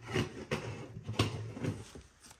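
Handling noise: a few soft knocks and scrapes as a plastic grill cover is fitted onto a 6.5-inch car coaxial speaker resting on its cardboard box.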